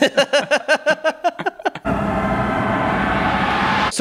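Two men laughing in quick, repeated bursts for almost two seconds, followed by a steady, dense rumble that lasts about two seconds and cuts off suddenly.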